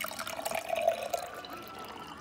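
Water poured from a metal cup into a glass jar, splashing steadily as the jar fills.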